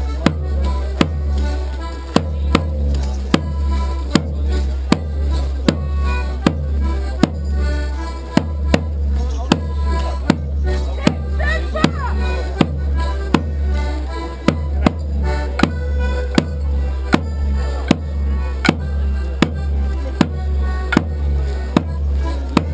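Border morris band playing a dance tune: squeezeboxes (accordion or melodeon) with a steady, even beat of sharp percussive strikes and a pulsing bass.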